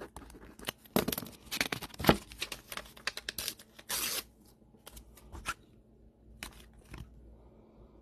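Crinkling and crackling of plastic card packaging being handled: a dense run of irregular crackles for a couple of seconds, a short rustle about four seconds in, then a few scattered clicks.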